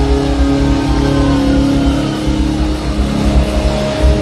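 Live hard rock band playing loudly: electric guitar holding long sustained notes over the drums, changing to a higher held note about three seconds in.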